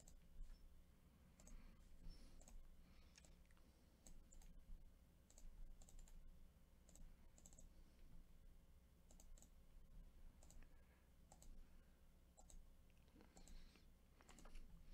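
Near silence with faint, irregular clicks from a computer mouse and keyboard.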